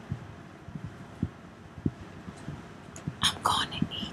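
A woman whispering close to the microphone near the end, preceded by a few soft low thumps.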